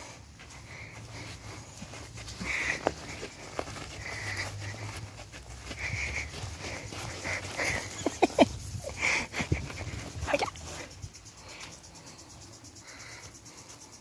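Beagle puppies whining and yipping in short, repeated high cries, with scuffling and a few sharp knocks as they play around the feet, busiest about two thirds of the way through.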